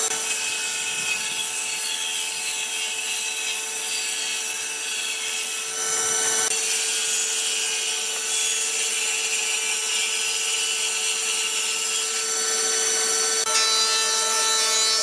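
Hitachi table saw running with a steady hum while its blade rips a pine board fed along the fence. The cutting noise shifts about six seconds in and again near the end.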